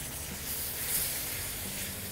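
Sliced gourds frying in oil in an iron kadai: a steady sizzle.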